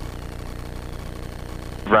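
Light bush plane's piston engine running at low power on the ground roll after landing, heard from inside the cabin as a steady drone with an even low pulse.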